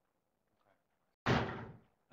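Near silence, then a single sudden thump about a second in that fades within half a second, like a knock or bump picked up by the podium microphone.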